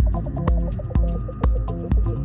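Minimal house music: a steady four-on-the-floor kick drum about twice a second over a deep bass line, with short repeating synth notes and hi-hat ticks between the kicks.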